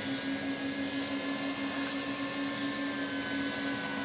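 The motors and propellers of a 450-size quadcopter hovering in position hold. It makes a steady hum with one strong low tone and fainter higher whining tones, the pitch holding even.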